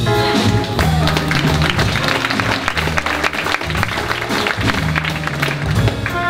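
Audience applauding mid-tune while a jazz combo's upright bass and drums keep playing underneath; the melody instruments drop out and the clapping fades away shortly before the end.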